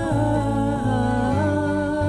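Live folk trio music between sung lines: a pitched melody line moving in short steps over acoustic guitar and held bass notes.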